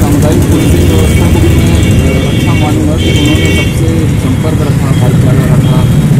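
A man talking outdoors over a loud, steady low rumble of road traffic. Two short high-pitched tones sound about a second in and again about three seconds in.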